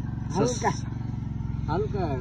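A small engine running steadily in the background, a low even drone, with short bits of a man's speech about half a second in and near the end.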